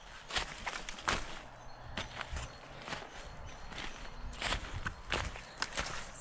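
Footsteps over dry leaf litter and twigs on a woodland floor, an uneven step roughly every half-second to second.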